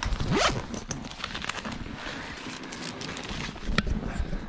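Close handling noise from a hand-held camera being moved and set up: fingers rubbing and scraping right at the microphone, with rustling, small clicks and a brief rising squeak near the start.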